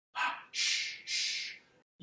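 A man's voice making sound effects for a children's song: a short breathy pant like a panting dog, then two long hissing "shh" shushing sounds. There is no ukulele playing under them.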